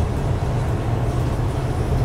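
Steady road and engine rumble inside a truck cab cruising along a highway.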